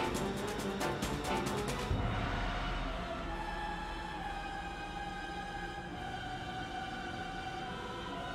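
Background music: a fast percussive beat that stops about two seconds in and gives way to sustained held tones.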